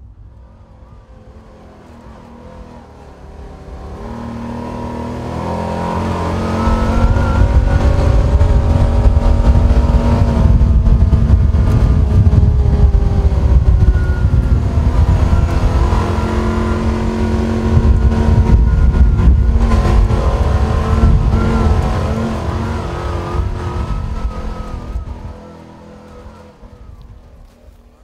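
A vehicle engine running hard, its pitch wavering as it revs, swelling in over several seconds, holding loud, then fading out near the end.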